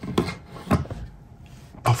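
A few light clicks and taps from the hard plastic of an airsoft pistol and its magazine being handled.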